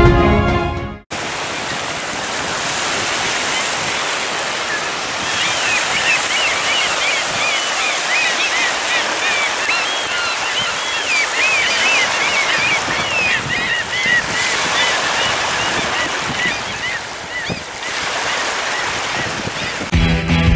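Choppy Volga waves breaking and washing over a stony shore, a steady rushing wash with wind in it, after a short tail of background music in the first second. From about five seconds in, a run of quick high chirps sounds over the water for some ten seconds.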